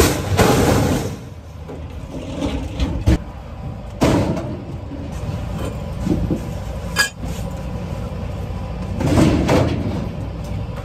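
Scrap metal being unloaded from a trailer by hand: sheet-metal pieces scraped and dragged across the deck and dropped, giving a run of clanks and knocks, with one sharp ringing metal hit about seven seconds in. A low steady rumble runs underneath.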